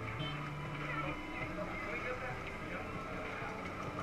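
Faint, steady race-track background of small electric racing karts running past, with a low motor hum during the first second.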